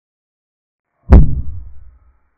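Piece-move sound effect of a chess replay: one sharp thud about a second in, with a deep tail that dies away within the second.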